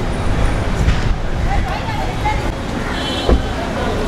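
Outdoor city street ambience: steady road traffic noise with faint distant voices.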